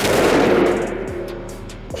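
A single shot from a large-frame revolver: one sharp crack followed by a long reverberant decay that dies away over about a second and a half in an indoor shooting range. A short laugh comes near the end.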